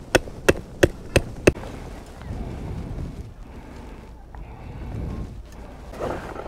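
A metal lamp-stand pole being fitted to a wooden camp table: a quick run of five sharp metallic clicks, about three a second, then softer rubbing and handling noise.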